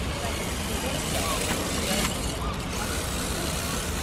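Steady rumbling wind noise on the microphone outdoors, with faint voices behind it.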